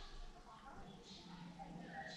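Faint bird calls over quiet open air, with a short low hum from a man's voice about one and a half seconds in.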